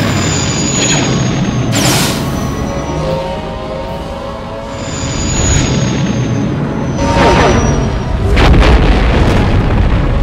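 Dubbed explosion sound effects over background music: blasts about two seconds in and twice more near the end, the last the loudest with a deep boom. High falling whistles run between the blasts.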